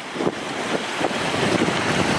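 Wind buffeting the phone's microphone over water washing around a concrete step, a steady rushing noise that grows louder over the first second or so.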